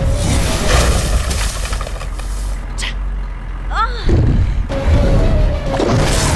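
Action film soundtrack: a dramatic music score over deep rumbling sound effects, with a swooping fall in pitch about four seconds in.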